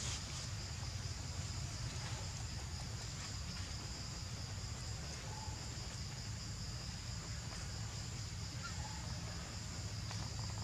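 Steady insect chorus, a continuous high buzz, over a low rumble, with a couple of faint short calls about five and nine seconds in.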